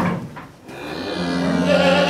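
One of a herd of Charolais beef cattle mooing: a single long call that starts a little under a second in and grows louder to the end.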